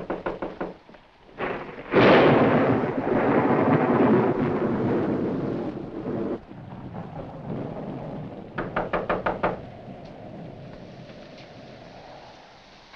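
A clap of thunder rumbling for about four seconds, with rapid knocking on a wooden door in two short runs, one at the start and one after the thunder.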